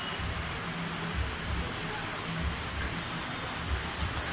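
Steady rain falling on a wet street: an even hiss, with a few low rumbles now and then.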